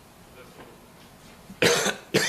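A man coughs once, loudly and abruptly, near the end; before it there is only faint room tone.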